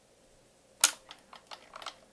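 Ellex Ultra Q Reflex YAG laser firing during vitreolysis of an eye floater: one sharp click about a second in, followed by a few fainter clicks. Each shot is a laser pulse vaporizing the floater's clumped collagen.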